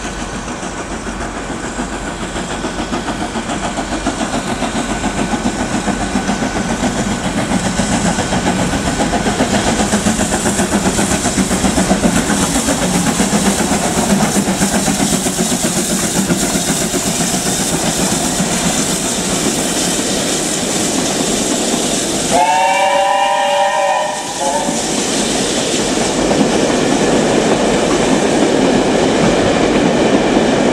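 BR Standard Class 7 'Britannia' Pacific steam locomotive 70000 and its coaches rolling slowly past, the running sound of the train growing louder as it comes in. About two thirds of the way through, a whistle sounds for about two seconds, then the coaches keep rolling by.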